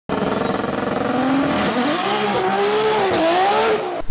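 A car engine revving, its pitch wandering up and down, with a high whine that rises over the first two seconds and then holds.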